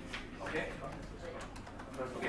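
Faint, indistinct low voices of people talking quietly in a classroom, with a few small clicks.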